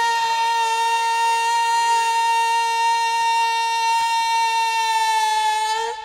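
One long, steady note from a wind instrument, held at an unchanging pitch and cutting off near the end.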